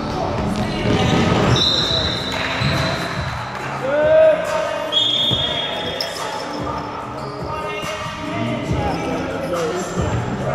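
Basketball game in a large reverberant gym: a ball bouncing on the hardwood floor with players' shoes moving and voices calling out. Two high squeaks cut through, one about a second and a half in and a shorter one about five seconds in.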